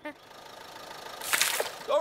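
Cartoon sound effect of vehicles driving off: a steady rush of noise that swells, with a louder hissing burst about a second and a half in, then a short sigh.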